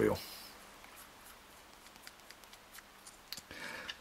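Quiet room tone with a few faint, sharp clicks and taps about three and a half seconds in, from hands handling a metal baitcasting fishing reel.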